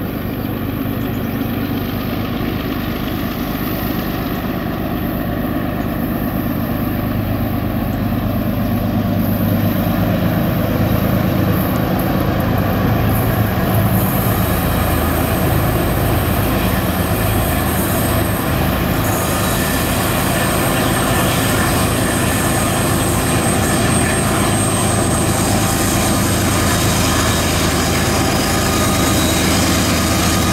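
Freight train approaching and passing behind GE diesel-electric locomotives, the engines and wheels on rail rumbling steadily and growing louder as the train nears.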